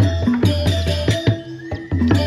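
Balinese gamelan playing a fast, driving rhythm of ringing pitched bronze strikes over drum beats, with a short lull near the end.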